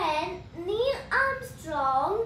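A young boy's voice, talking in short bursts.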